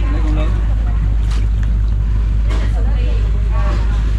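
A motor running with a steady, loud, low drone and an even pulse.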